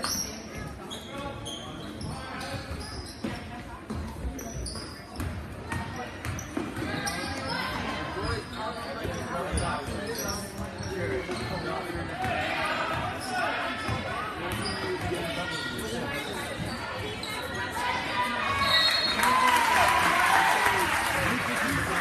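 A basketball dribbled and bouncing on a hardwood gym floor during a game, with spectators' voices in the stands, which grow louder near the end.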